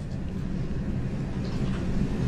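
Steady low rumble of background noise, with no speech.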